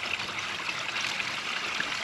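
Small garden-pond waterfall trickling steadily over a stone spillway into the pond.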